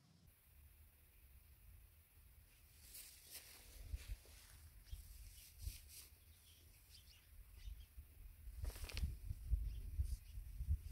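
Faint outdoor ambience: an uneven low rumble of wind on the microphone that grows toward the end, with a few brief rustles, the clearest about three seconds in and just before the end.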